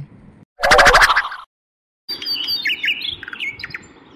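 A loud cartoon snore sound effect, one rattling snore lasting under a second. After a short silence, birds chirp and tweet in quick high calls.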